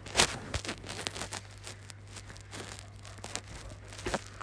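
Immersion hand blender puréeing chunky courgette soup in a steel pot: a low steady hum with irregular churning noise, and a knock just after the start.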